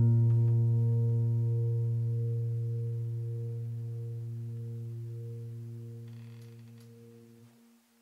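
Background music: a low piano note, struck just before, rings out and fades slowly, dying away to silence about seven and a half seconds in.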